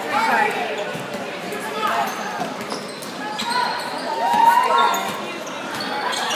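Basketball dribbled on a hardwood gym floor, with spectators' voices and shouts carrying through the large gym.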